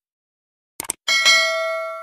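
Sound effect of a subscribe-button animation: a short sharp click, then a bell ding, struck twice in quick succession, that rings on and slowly fades.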